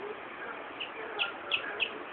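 Birds chirping: about four short, high chirps in quick succession in the second half, over a steady background hiss.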